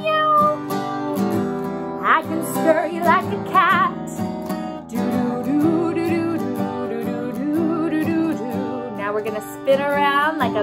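A woman singing while strumming an acoustic guitar. Her voice slides up and down in pitch and holds a wavering note about four seconds in.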